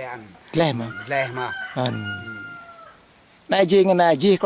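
A rooster crowing once in one long drawn-out call that ends about two-thirds of the way through.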